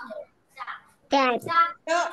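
Children's voices calling out in a drawn-out sing-song chant, louder from about a second in.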